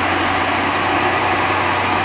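Self-propelled snow blower running: a loud, steady mechanical noise with a low hum beneath it.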